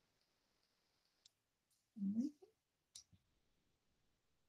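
Faint clicks and paper handling from a Bible's pages being turned, with a short voice sound, a brief hum, about two seconds in.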